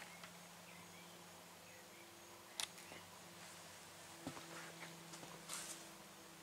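Near silence: a faint steady low hum with a few soft clicks, one about two and a half seconds in and more near the end.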